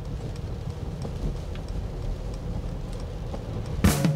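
Low road and tyre noise inside the cabin of a Mercedes EQC electric SUV rolling slowly on a wet motorway, with faint scattered ticks of rain on the car. A sudden loud sound breaks in right at the end as music begins.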